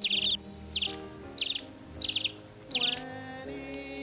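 A bird calling five times in a row, each a short, high chirp that drops quickly in pitch, spaced about two thirds of a second apart, over soft background music with held notes.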